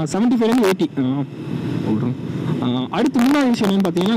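Bajaj Pulsar 150's single-cylinder engine running at a steady highway cruise of about 63 km/h, with wind rush on the microphone, heard on its own for about a second and a half in the middle between stretches of the rider's talk.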